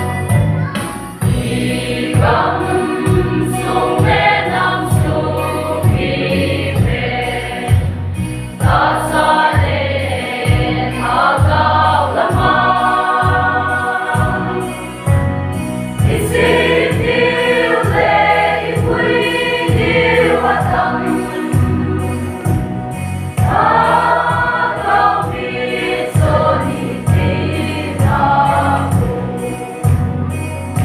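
Mixed choir of young women and men singing a gospel song over an accompaniment with a steady low beat. The sung phrases pause briefly several times while the beat carries on.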